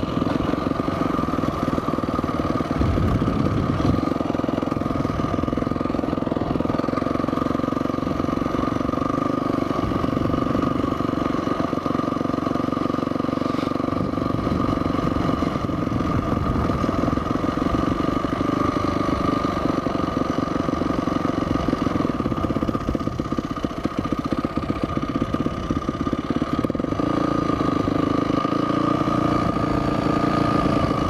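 Dirt bike engine running steadily as it is ridden along, heard from a helmet-mounted camera; the engine note shifts near the end.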